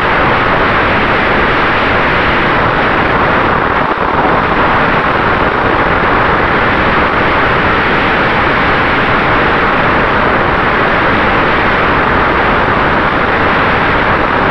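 Onboard sound of a Freewing 737-800 RC jet in flight: a loud, steady rush of airflow over the camera mixed with the running of its electric ducted fans, with a faint steady whine underneath.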